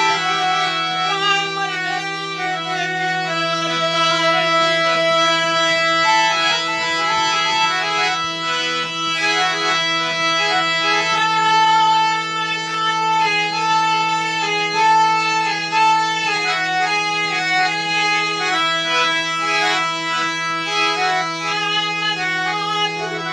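Harmonium played solo: a melody of changing notes over low notes held steady throughout.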